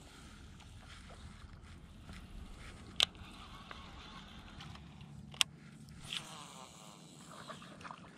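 Faint handling noise of fishing gear in the dark, with a low rustle and two sharp clicks about two and a half seconds apart.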